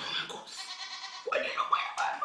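A woman's voice praying in a trembling, bleat-like wail for about a second, then going on in speech.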